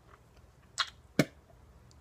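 A man drinking from a drink can: two short, sharp sounds close together about a second in.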